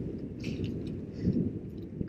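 Wind rumbling on a head-mounted camera's microphone, with a small swell a little past halfway.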